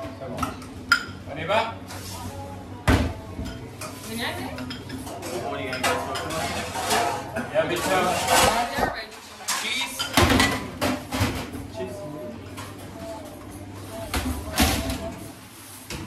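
Kitchen clatter of ceramic plates and stainless steel serving pans and utensils clinking and knocking on a steel counter as dishes are plated, in frequent irregular knocks, with voices in the background.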